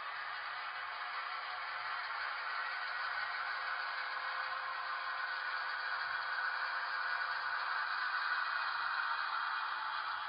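HO scale model train, an EMD SW1500 switcher with boxcars, rolling along the track. The rolling noise is steady, with a faint steady hum under it, and grows a little louder towards the end.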